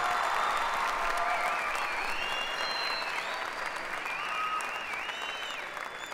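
Live theatre audience applauding steadily, the applause slowly dying down toward the end.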